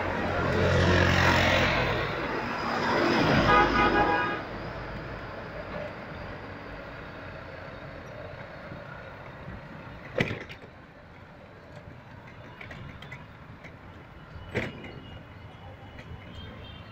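Road traffic heard from a moving vehicle. A horn sounds over the loud rush of passing traffic in the first four seconds. Then steady, quieter road noise follows, with two sharp knocks about ten and fifteen seconds in.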